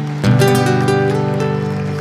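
Live stage band playing a held chord, struck afresh about a quarter second in and slowly fading.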